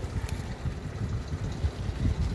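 Low, uneven rumble with no clear knocks or tones, like handling or wind noise on a phone microphone.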